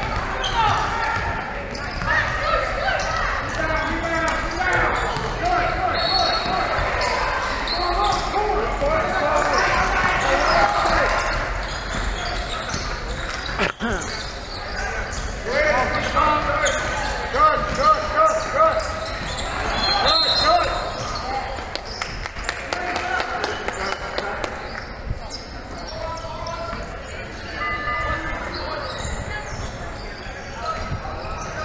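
A basketball bouncing on a hardwood court during play in a large indoor sports hall, with players' and spectators' voices calling out throughout.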